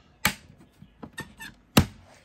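Sharp handling knocks and clicks: two loud ones about a second and a half apart, with lighter clicks between.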